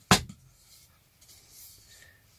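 A single sharp click as the white inner spacer frame of an Ikea Ribba picture frame is levered and pops out, followed by faint rubbing as it is lifted clear.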